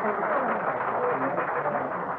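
Nightclub background ambience of an old-time radio drama: a steady murmur of crowd chatter with faint music beneath.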